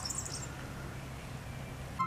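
Quiet outdoor ambience among trees: faint high chirping fades out in the first half second, over a steady low rumble.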